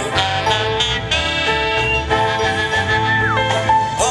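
A live band with drum kit and keyboards playing an upbeat song, here in a passage that is mostly instrumental. It has one long held high note early on and a falling slide in pitch near the end.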